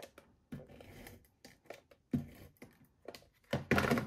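Card stock being handled and pressed down on a craft cutting mat while layering a handmade card: a few separate soft taps and thunks with paper rustle, the loudest cluster near the end.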